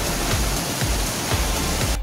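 Steady rushing water of a broad waterfall, heard under background music with a beat.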